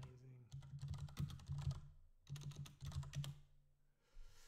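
Fast typing on a computer keyboard: two quick runs of keystrokes with a short break about two seconds in.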